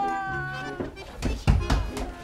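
A drawn-out wailing cry that rises in pitch and then holds, over background music, followed about a second and a half in by a couple of heavy low thuds, the loudest sounds.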